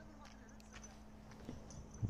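Near silence: a faint steady hum with a few scattered faint clicks.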